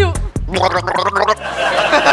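A person gargling a song's tune with water held in the mouth, a wavering pitched gurgle, over background music.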